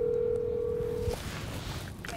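Telephone ringback tone heard through a smartphone's speaker: one steady ring that stops about a second in, followed by faint hiss, while the call waits to be answered.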